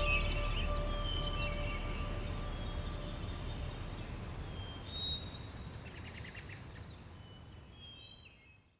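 Small birds chirping in short, scattered calls over a low outdoor background noise, while the last held notes of background music die away in the first couple of seconds; the whole sound fades out toward the end.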